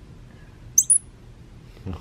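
A baby squirrel monkey giving a quick, high-pitched double chirp just under a second in.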